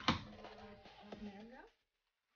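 A woman's voice making a short wordless vocal sound, held near one pitch with slight bends for about a second and a half, opened by a sharp click.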